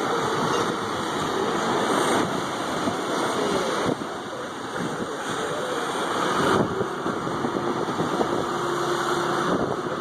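A John Deere backhoe loader's diesel engine running steadily, with surf washing in.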